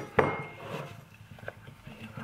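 A plastic raspberry punnet knocking on the rim of a ceramic bowl: one sharp clink with a short ring just after the start. A few faint light knocks and rustles follow as raspberries are tipped into the bowl.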